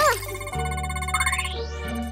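Electronic scanning sound effect: rapid high beeping and a rising synthesized sweep over steady background music.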